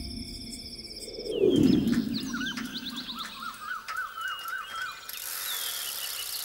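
A deep falling whoosh about a second and a half in gives way to rural outdoor ambience. Birds chirp, one repeating a short rising-and-falling call about three times a second, and a high steady insect hiss comes in near the end.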